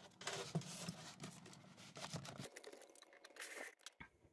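Vintage Barbie Mountain Ski Cabin vinyl play-set case being opened and folded out by hand: faint rustling and crinkling of the stiff vinyl with small clicks, thinning out in the second half.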